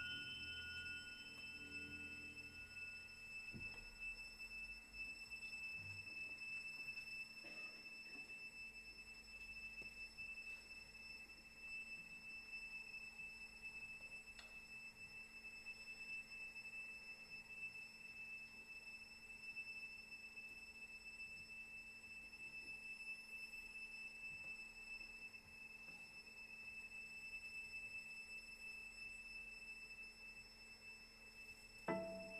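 A hushed pause in a live concert: near silence with a faint, steady high-pitched tone, while the last ringing of the preceding music dies away in the first few seconds.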